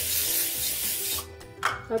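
Aerosol cooking spray hissing in one long burst onto a non-stick frying pan, stopping a little over a second in.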